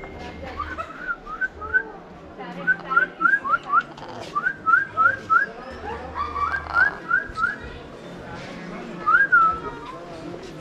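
Whistling: short, quick rising whistles in runs of three or four, repeated several times, then one longer whistle that rises and falls near the end.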